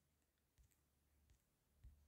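Near silence: room tone with a couple of very faint clicks.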